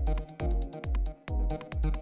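Live hardware techno: a four-on-the-floor kick drum from an Elektron Digitakt, each kick dropping in pitch, about two a second, with hi-hat ticks between the kicks over held synth tones.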